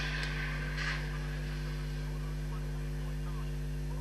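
Steady electrical mains hum with a faint hiss under it, and a small faint noise about a second in.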